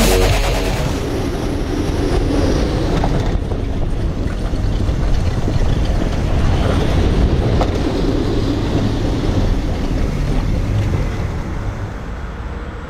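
Rumble of a steel roller coaster train running on its track, with wind buffeting the on-ride microphone. It holds steady, then fades near the end as the train slows.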